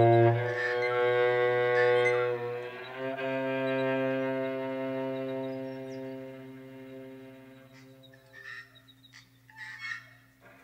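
Music: low, long-held bowed-string notes in a cello-like register, moving between pitches and fading out near the end. A few faint clicks follow.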